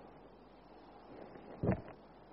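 Faint room tone, with a single short, low thump about one and a half seconds in.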